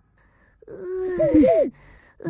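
A cartoon child's voice making a drawn-out, wordless sleepy groan that starts about half a second in, wavers and then falls in pitch.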